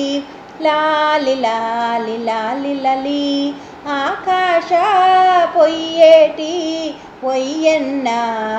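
A solo female voice singing a laali, a devotional lullaby to Krishna, apparently unaccompanied, in long held phrases with short breaks for breath; in the middle the melody bends and is ornamented.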